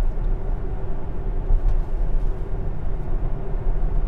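Steady road and tyre noise of a Tesla electric car cruising at about 70 km/h, a low rumble with a faint steady hum and no engine sound.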